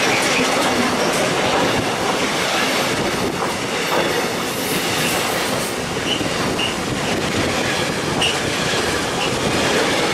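Freight wagons of an intermodal train, loaded with semitrailers, rolling past at close range: a steady rumble of wheels on rail with clatter. A few short high squeals come from the train in the second half.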